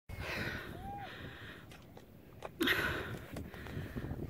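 Hard breathing of a winded hiker after a steep climb up soft sand, with a louder exhale about two and a half seconds in and a few soft clicks.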